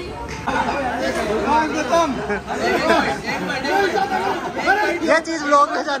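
Several people talking over one another: lively group chatter, with no other sound standing out.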